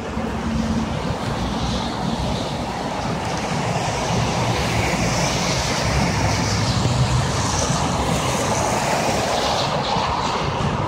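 IVECO Daily minibus pulling away from a stop and accelerating into traffic, its engine running under load amid steady road noise from other vehicles. The sound grows louder in the second half.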